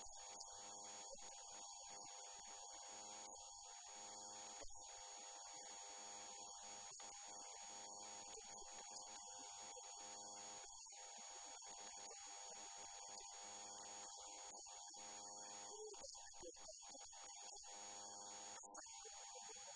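Near silence apart from a faint, steady electrical hum with a thin high whine, unchanging throughout.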